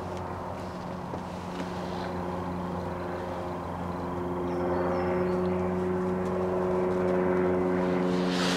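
A steady engine hum at an even, low pitch that grows louder about halfway through.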